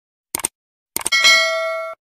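An edited-in sound effect: a couple of quick clicks, then a bright metallic ding about a second in that rings on steadily and cuts off abruptly near the end.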